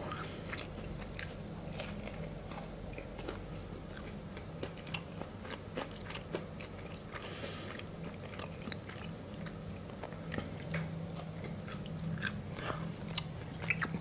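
Close-miked chewing of crunchy spiral potato chips: a scatter of small, faint crunches and mouth clicks, over a steady low hum.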